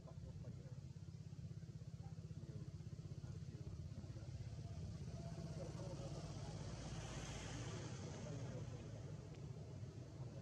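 Faint, steady rumble of a motor vehicle engine running in the background, growing slightly louder, with a brief hiss swelling about three-quarters of the way through.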